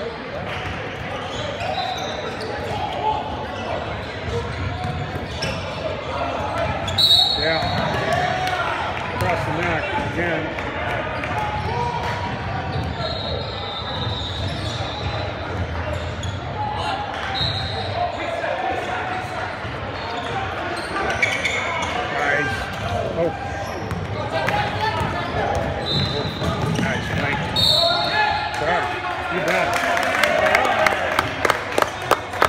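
Indoor basketball game sounds in a large, echoing gym: the ball bouncing and continuous overlapping chatter from players and spectators, with several short high-pitched squeaks.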